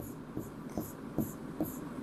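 A stylus scratches quick, even hatching strokes across an interactive display's screen, about four strokes a second.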